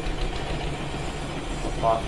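Steady low background hum, with a brief snatch of a person's voice near the end.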